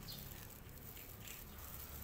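Domestic cat eating crunchy fried snack sticks from a plate: faint, irregular chewing ticks over a low steady background hum.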